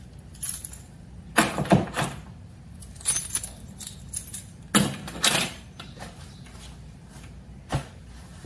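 Bunches of metal keys jangling as they are hung on the hooks of a wooden key holder, in several short bursts of clinking with quiet between.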